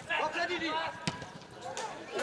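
Footballers shouting and calling to each other on the pitch, with a sharp knock about a second in from a ball being kicked.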